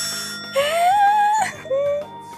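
A young woman's long, high-pitched, drawn-out 'eeh' of dismay at drawing a bad-luck fortune, rising at first and then held for about a second, followed by a shorter 'eh', with soft background music underneath.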